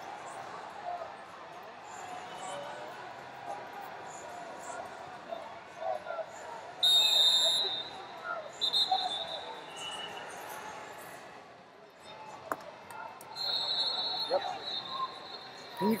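Murmur of voices and mat noise, then about seven seconds in, as the period clock runs out, a loud shrill referee's whistle blast. A shorter blast follows about two seconds later, and a fainter, longer one comes near the end.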